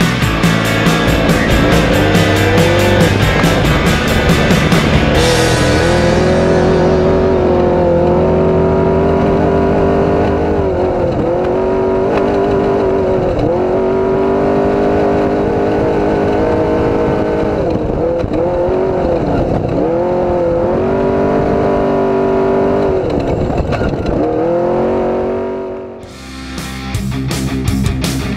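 Off-road race truck's engine heard from inside the cockpit, its revs rising and falling over and over with short dips as it is driven hard over rough desert terrain. Rock music fades out during the first few seconds.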